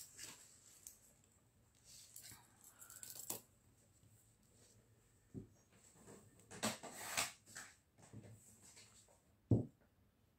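Faint, scattered rustling and sliding of paper and card being handled on a craft mat, with a short low thump near the end that is the loudest sound.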